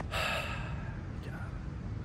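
A man's breathy sigh just after the start, lasting under half a second, over a steady low rumble of wind on the microphone.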